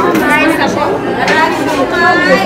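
Indistinct chatter of several people talking at once at a busy counter, with overlapping voices and no single clear speaker.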